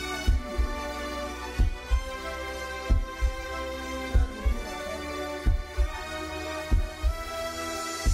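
Live pagodão band music with no vocals: sustained chords over heavy, bass-boosted drum hits that come in pairs about every second and a quarter.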